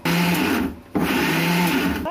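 Electric mixer grinder with a small steel jar, run in two short pulses (a brief one, a short pause, then about a second more), grinding coriander leaves with spices into a coarse green powder.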